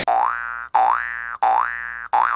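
A cartoon 'boing' sound effect played three times in quick succession, each one a short rising twang.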